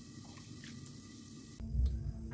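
Curry being ladled into a ceramic bowl: faint wet squishes and small drips, then about one and a half seconds in a louder low rumble starts suddenly.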